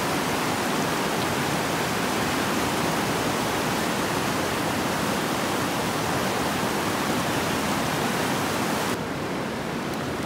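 Steady rushing of running water, an even hiss with no breaks, which drops in level and loses its brightness about nine seconds in.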